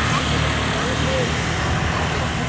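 Several small motorbikes passing on the road, their engines running steadily, with a faint voice now and then.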